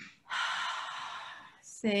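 A woman breathing out long and audibly, a breathy hiss lasting about a second and a half that fades away. This is the slow exhale of a 4-7-8 breathing exercise.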